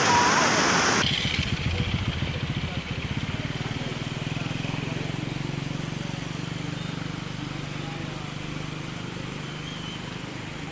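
Swollen river rushing loudly for about a second, cut off abruptly. A low, steady engine hum with a fast pulse follows and slowly fades.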